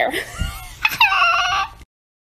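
A young woman laughing, ending on a high, drawn-out note that cuts off suddenly near the end.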